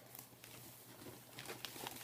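Faint rustling and a few light clicks of a cardboard package being handled, over a low steady hum.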